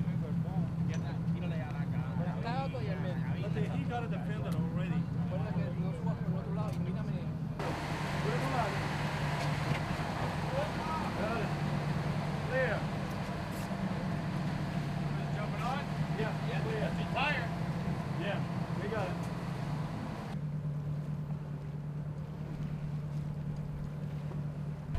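Indistinct voices of people talking over the steady drone of a boat engine, the background changing abruptly about eight and twenty seconds in.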